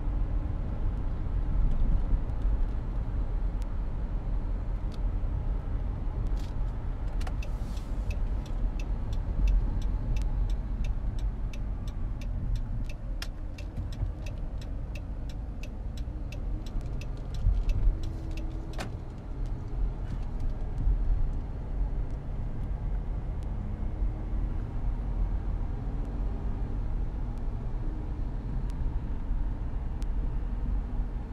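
Car cabin noise while driving, a steady low rumble of engine and tyres on a wet road. Partway through, a turn signal ticks quickly and regularly for about nine seconds as the car turns, and a single click follows a few seconds later.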